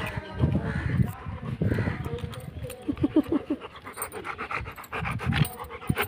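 Labrador retriever panting close to the microphone, in quick repeated breaths.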